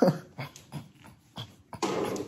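A man laughing under his breath behind his hand in a string of short, breathy bursts, a stronger one near the end.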